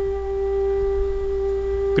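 A steady drone held on one pitch, with fainter overtones above it, over a low electrical hum.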